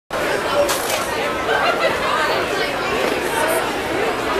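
Crowd chatter: many people talking at once, a steady babble of overlapping voices with no single voice standing out.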